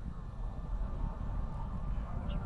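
Low, choppy rumble of an Atlas V rocket in powered ascent, heard from far off. Its RD-180 first-stage engine and solid rocket booster are both firing.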